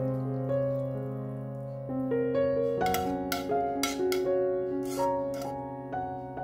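Background piano music: slow, sustained notes and chords, with a few short hissy noises in the second half.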